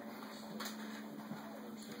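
Quiet room tone with a steady low hum and one faint tap about half a second in.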